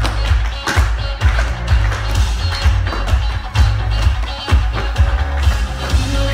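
Tap shoes striking the stage in quick, irregular strings of sharp clicks during a tap duet, over pop music with a strong bass beat playing through a loudspeaker.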